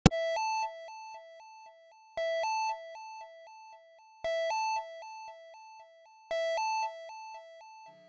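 Electronic two-tone beeping, a low and a higher note alternating quickly. It comes in four bursts about two seconds apart, and each burst fades down in steps.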